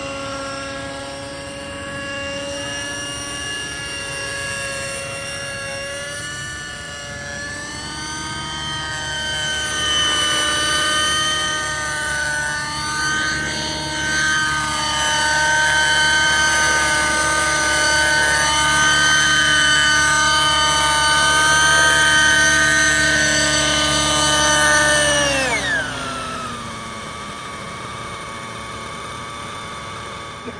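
Align T-Rex 600N RC helicopter's nitro glow engine and rotors running at high rpm in flight, a steady high whine whose pitch shifts slightly with throttle and which grows louder as the helicopter comes close. About 25 seconds in the engine note falls sharply and settles lower and quieter.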